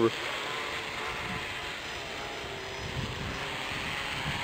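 Electric RC hexcopter's six motors and propellers whirring steadily as it hovers a short way off the ground.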